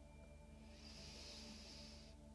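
Near silence with a faint, steady musical drone underneath; from a little under a second in, a soft breath is let out in a long exhale.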